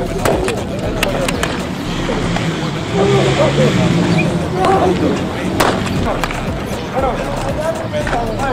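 Voices carrying across a baseball practice field, with a few sharp knocks of baseballs during infield drills. The loudest knock comes a little past halfway.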